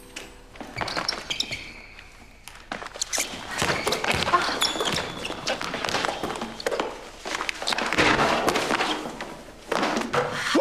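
A basketball bouncing and being dribbled on a hardwood gym floor, with players' footfalls, as a string of irregular knocks and thuds that echo in the hall.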